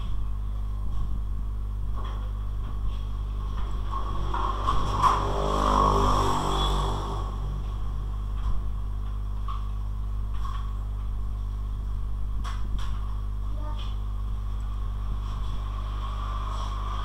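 Steady electrical mains hum on the recording. A louder sound with several tones swells and fades about four to seven seconds in, and a few faint clicks sound near the end.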